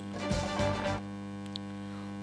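Steady electrical mains hum, a low buzz with several evenly spaced tones, under a gap in the broadcast audio. A brief burst of noise lasting under a second comes near the start.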